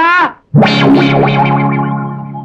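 A music sting on the film soundtrack: a single distorted electric-guitar chord struck about half a second in, ringing on and slowly fading.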